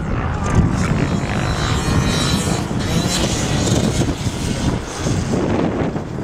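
Engine of a small 50cc two-stroke motocross bike buzzing and revving up and down as it is ridden.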